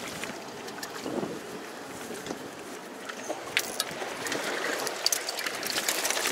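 Seawater sloshing and lapping among volcanic rocks, with wind on the microphone and scattered small clicks and splashes that grow more frequent in the second half.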